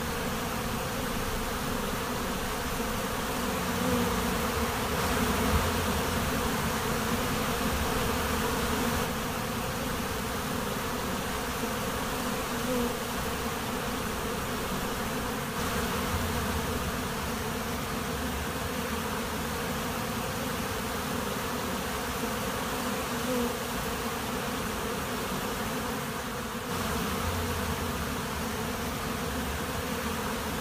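A honeybee swarm buzzing: the dense, steady hum of thousands of bees in flight and crowding together as the colony swarms.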